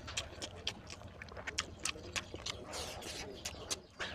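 Close-miked wet chewing and lip smacking of oily mutton fat: a run of irregular sharp clicks, several a second.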